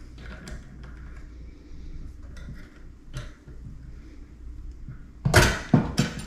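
Small metal clicks and rattles as a brass clevis strap is worked onto the lift rod of a sink's pop-up drain, with a louder clank of metal a little after five seconds in.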